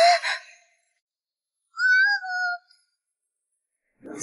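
A girl's short startled cry right at the start, then a higher, gliding cry about two seconds in. Near silence between them.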